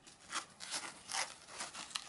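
Irregular crinkly rustling with a few light ticks as a large flint hand tool is handled and set back into a foam-lined drawer tray.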